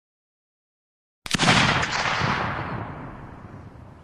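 Gunshot sound effect: a sudden sharp report about a second in after dead silence, followed by a long echoing tail that dies away over the next three seconds.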